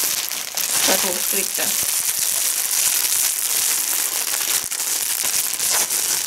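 Thin clear plastic packaging bag crinkling continuously as it is handled, a crackly rustle dotted with small clicks.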